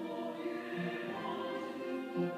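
Church choir singing a sacred piece in sustained chords, accompanied by flute, violins and trombone.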